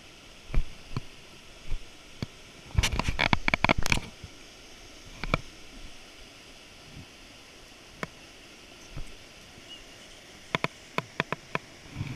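A small creek cascade rushing steadily and faintly, under a series of close clicks and knocks. The knocks come thickest in a rapid rattle about three seconds in and again in a quicker string near the end.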